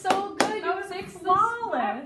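Two sharp hand claps, one right at the start and one about half a second in, among voices calling out in celebration at the end of a piece.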